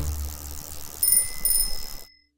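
Background music fading out, then a small bell rung twice about half a second apart, the second ring dying away.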